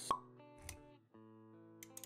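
Intro jingle with sound effects: a sharp pop just after the start, a low thump a little later, then held musical notes.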